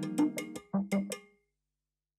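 Background music track with rhythmic percussive hits and pitched notes, which ends about one and a half seconds in, leaving silence.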